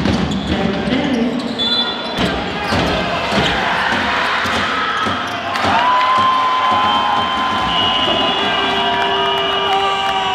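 Basketball game heard from the stands of an indoor arena: crowd voices and noise with the thuds of the ball bouncing on the court. From about halfway, several long held tones sound over the crowd.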